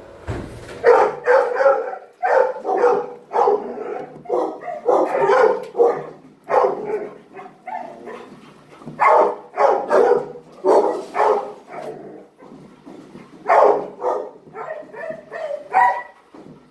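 Dogs barking repeatedly in a shelter kennel, about two barks a second, with a couple of short pauses.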